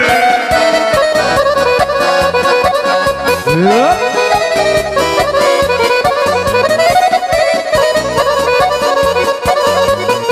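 Instrumental kolo folk dance music played live: a fast, busy accordion-toned lead melody over a quick steady beat, with a rising pitch sweep about three and a half seconds in.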